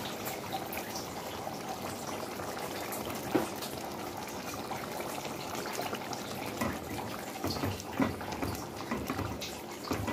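Okra stew in palm oil simmering and bubbling in a pot, a steady liquid sound broken by a few sharp knocks, the loudest about three seconds in and near eight seconds.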